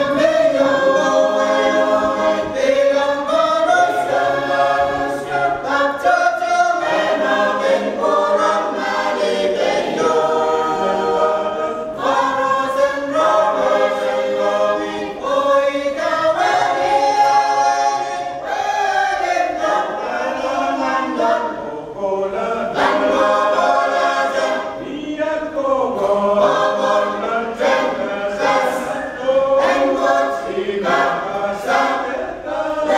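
Mixed choir of men and women singing a hymn unaccompanied, in sung phrases of held notes with short breaks between them.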